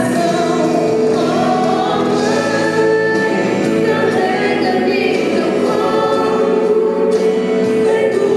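A choir singing a Christian song, with long held notes.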